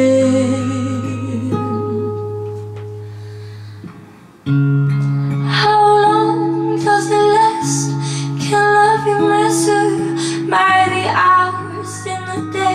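Girl's voice holding a sung note with vibrato over an acoustic guitar chord that fades to a near pause, then the acoustic guitar comes back in suddenly about four and a half seconds in with plucked chords and held notes.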